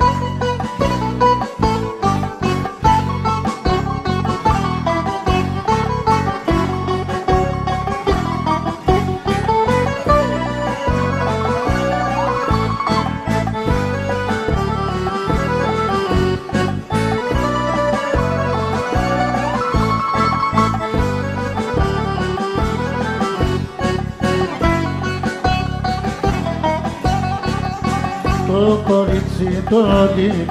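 Instrumental passage of a live Greek laïko song: a plucked-string melody over a steady bass beat, with no singing.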